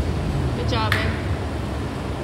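A person's brief rising call or shout, under a second long, about halfway in, over a steady background noise.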